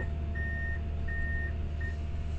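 Komatsu PC200 excavator's travel alarm beeping, a steady high tone in about three evenly spaced beeps, as the machine tracks in reverse. Under it the engine runs with a steady low hum.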